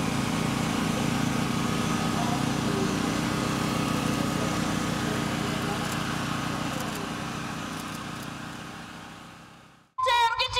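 A steady low engine hum, with faint voices in the background, fading out just before the end.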